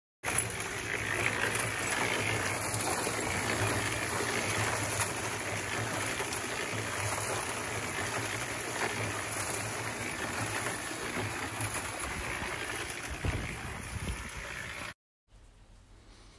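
A cement mixer converted into a gold trommel running: water from a hose gushing and splashing into the turning perforated barrel as dirt is washed through it, over the steady hum of the mixer. The sound cuts off suddenly near the end.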